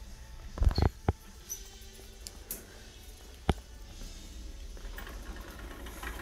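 Metal shopping cart being pushed across a concrete store floor: a low steady rumble with a few sharp clunks a little under a second in and a single sharp knock about halfway.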